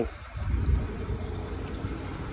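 Low, steady rumble of a semi-truck's diesel engine idling.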